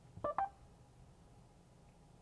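Mercedes MBUX voice assistant's short electronic chime: a quick run of two or three brief rising beeps in the first half second, just after the spoken request ends.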